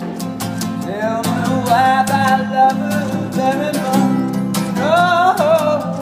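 A man singing and strumming an acoustic guitar: steady chords under a melody of long, bending sung notes with vibrato, two phrases swooping up about a second in and again near the end.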